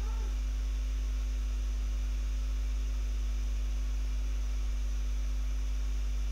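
Steady low electrical hum, mains hum on the recording, unchanging throughout.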